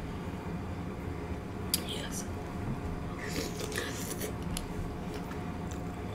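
Close-miked chewing of fried fish, with scattered crisp crunches and wet mouth clicks, busiest in the middle.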